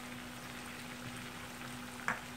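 Potato slices frying in oil in a pan, a steady soft sizzle, with a faint steady hum underneath.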